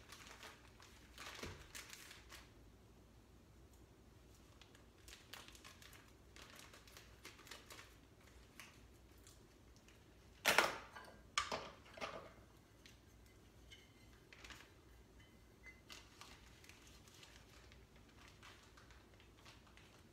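Brown sugar being scooped from its bag and packed into a measuring cup: soft scraping, rustling and light clicks, with two sharper knocks about ten and eleven seconds in.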